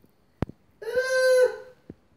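A domestic cat giving one steady call about a second long, with a sharp click before it and another near the end.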